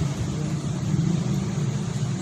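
A steady low hum, with no distinct events standing out.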